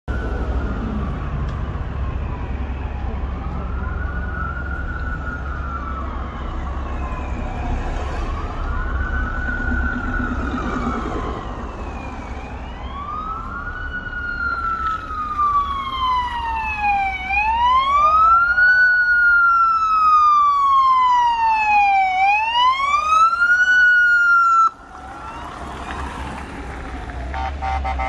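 Emergency vehicle siren on a slow wail, rising and falling about every four to five seconds: faint at first, then much louder and closer for the last several cycles, before it cuts off suddenly near the end.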